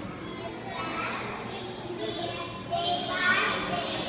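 Young children's voices reciting a prayer aloud, a small boy leading it at a microphone, louder near the end.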